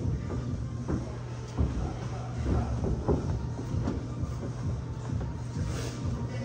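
Background music with a steady low bass, under scattered dull thumps and knocks.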